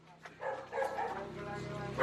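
Faint short animal calls, starting about half a second in, mixed with distant voices.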